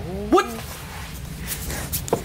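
Speech only: a man exclaims a short 'What?' that rises in pitch, over a steady low background hum.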